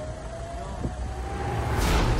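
Dramatic sound-effect bed under the news footage: a low rumble with a faint tone slowly rising, ending in a short whoosh about two seconds in as the title card appears.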